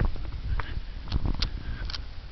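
Handling noise of a handheld camera carried while walking: a low, uneven rumble with a few sharp clicks and knocks.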